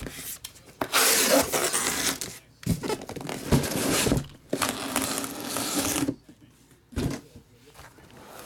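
Cardboard shipping case being pulled and slid off a stack of shrink-wrapped card boxes: three loud stretches of scraping, rubbing cardboard, with a short knock between them and another near the end.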